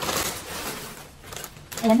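A large plastic bag crinkling and leafy plant cuttings rustling as the cuttings are pulled out of it, fading out about a second and a half in.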